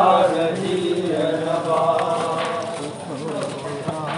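Voices chanting a nauha, an Urdu lament, in long held sung lines without instruments.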